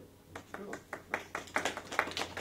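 A few people clapping, beginning about a third of a second in and growing louder, with quick irregular claps.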